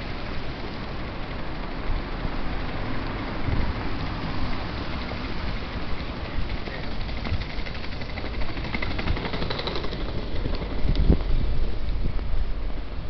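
City street traffic: cars passing with a steady rumble of engines and tyres on the road, growing louder near the end as a car goes by close to the microphone.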